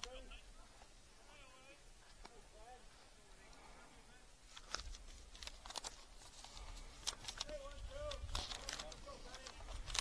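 Faint ballfield ambience: distant voices of players and spectators, with a few sharp clicks or knocks in the second half.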